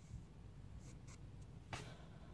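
Near silence: a faint low hum with slight handling noise, and a brief soft rustle near the end.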